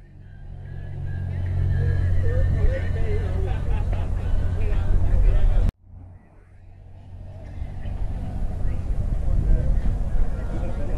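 Outdoor car-show ambience: a steady low engine-like rumble with faint, distant voices. The sound cuts out abruptly about six seconds in and fades back up.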